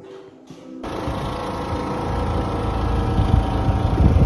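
Soft plucked-string music for under a second, then an abrupt cut to a loud, steady engine rumble close by.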